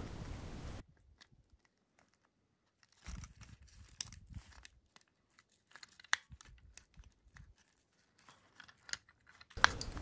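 Faint handling sounds: scattered small clicks and rustles of a plastic battery box as fingers push its loose wires back inside, the sharpest click near the middle.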